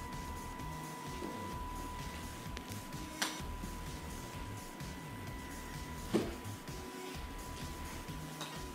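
Faint background music with a steady high tone under it. A sharp click about three seconds in fits a putter striking a golf ball on carpet, and a second click comes about six seconds in.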